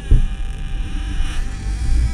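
Dark ambient sound-effect drone: a heavy low rumble with a hissy, buzzing layer and a thin steady tone over it, opening with a dull thud. The brighter upper hiss eases off about two-thirds of the way through.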